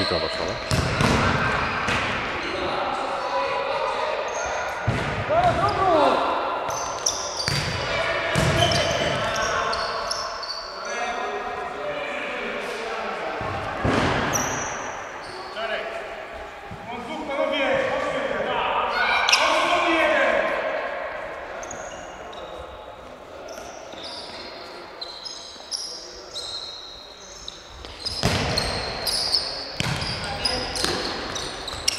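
Futsal ball being kicked and bouncing on the floor of a large, echoing sports hall, a string of sharp knocks through the play, with players calling out between them.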